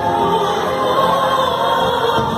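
Music with a choir singing: a group of voices holding sustained notes over a steady accompaniment, in the manner of a religious hymn.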